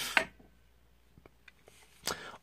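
Faint clicks and small ticks of hands working a box mod's stainless steel battery door over loaded 18650 batteries. A short hiss and a sharper click come right at the start, and another click comes at the very end.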